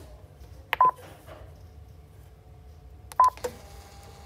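Mindray BeneHeart D3 defibrillator giving two short beeps about two and a half seconds apart, each starting with a click, as its user self-test finishes.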